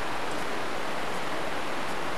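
Steady, even hiss of the recording's background noise, with nothing else happening.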